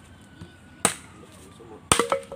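A machete chopping into a wooden branch: two sharp strikes about a second apart.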